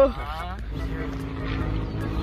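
The tail of a drawn-out 'whoa' falls away, then a steady, even low engine hum runs over a low rumble.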